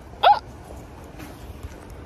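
A woman's short, sharp exclamation "Oh!", rising in pitch, about a quarter second in; after it only faint outdoor background noise.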